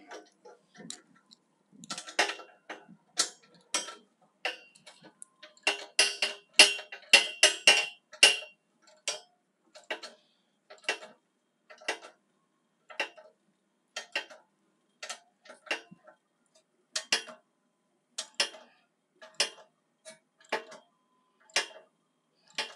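Sharp metallic clicks and clinks of hand tools working on a steel beam: a quick, louder run of them with a slight ring about a third of the way in, then single clicks about once a second.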